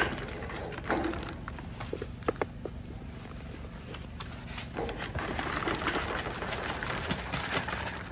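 Potting soil pouring from a tipped plastic nursery pot into a plastic pot: a grainy hiss, short at the start and longer through the second half, with a few light knocks of the plastic pots in between.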